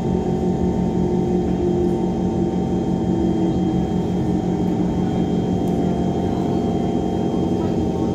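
Passenger train running steadily, heard from inside the carriage: a constant rumble with several steady hum tones held throughout.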